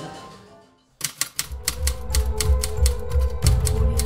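Background music fades out, then about a second in a typewriter sound effect starts: a rapid, uneven run of key clicks, about four or five a second, over new music with a steady deep bass.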